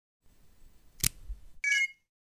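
Short electronic logo sound effect: a faint low rumble, a sharp click about a second in, then a brief bright chime near the end.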